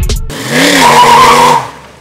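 The song's beat stops a fraction of a second in, then a car engine revs as its tyres squeal, the sound dying away near the end.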